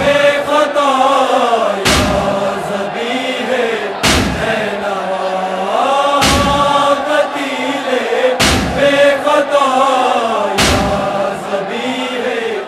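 Male voices chanting a drawn-out, wordless lament line of a nauha. A heavy thud falls about every two seconds.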